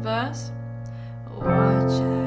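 Piano chords played with both hands under a singing voice. A sung note slides down at the start, the chord rings on and fades, and a new chord is struck about one and a half seconds in.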